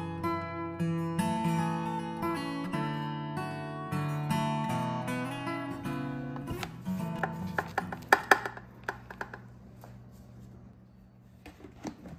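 Gentle acoustic guitar background music, plucked and strummed, fading out about halfway through. It is followed by a run of light knocks and taps, the loudest a little past the middle, then quiet room tone.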